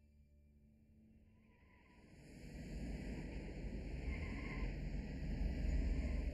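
Film soundtrack: faint sustained musical tones, then about two seconds in a rumbling noise swells up and stays loud.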